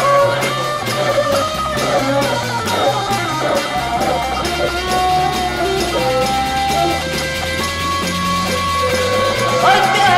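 Instrumental break of a 1960s Japanese rock band recording: guitar over a steady drum beat, with some long held notes in the second half.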